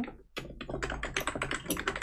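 Typing on a computer keyboard: a quick, irregular run of keystrokes that starts about a third of a second in.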